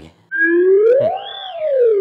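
A single long gliding tone that rises smoothly in pitch for about a second and then slides back down.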